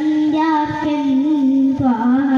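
A young boy singing a madh, an Islamic song in praise of the Prophet, solo into a microphone. He holds long notes whose pitch wavers and glides in ornamented turns, with a slight dip near the end.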